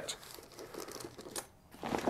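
Faint crinkling and rustling as items from a tool kit are handled, followed by a few light clicks near the end.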